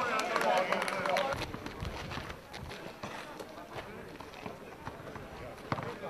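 Basketball game court sounds: voices call out in about the first second, then running footsteps and a scatter of short, sharp knocks on the court.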